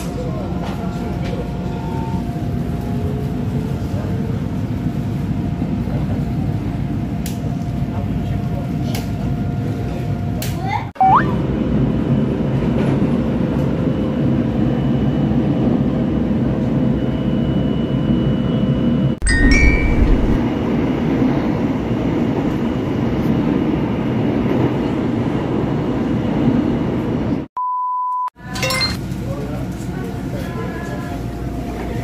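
Steady running noise inside a moving passenger train, with indistinct voices, changing suddenly twice. A short steady beep sounds near the end.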